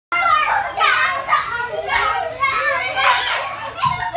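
Several small children shouting and calling out together as they play, their high-pitched voices overlapping.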